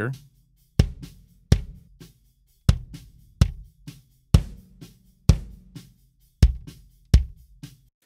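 Multitracked acoustic drum kit playing back in a steady beat of kick and snare hits, about one a second, with low kick ringing after each. The kick is doubled by a MIDI-triggered acoustic kick sample, and the sample changes as different acoustic kick presets are auditioned.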